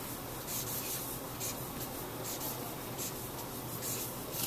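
Felt-tip marker stroking across a large sheet of paper as a word is lettered by hand, giving a series of short, separate scratchy strokes, about seven in four seconds.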